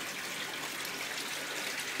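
Water running steadily in a tilapia tank of a recirculating aquaculture system, an even trickling rush with no breaks.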